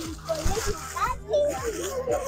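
Indistinct chatter of a small outdoor crowd, children's voices among it.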